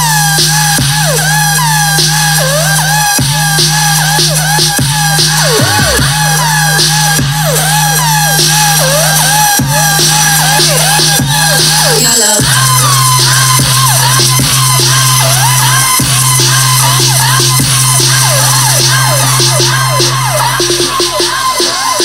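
Electronic song with a heavy, sustained bass line, played loud through a Koryo KHT4212FB 2.1 speaker system with its subwoofer. The bass note drops lower about halfway through.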